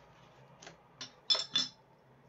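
Small metal sculpting tools clinking against each other as one is picked up: four short clinks over about a second, the third the loudest with a brief ring.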